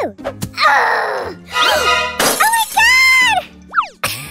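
Cartoon sound effects over background music: a noisy swoosh, then a drawn-out cry that rises and falls in pitch, and a quick sliding whistle near the end.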